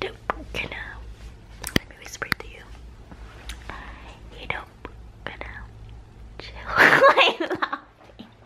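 A young woman whispering close to the microphone, then breaking into a loud laugh near the end.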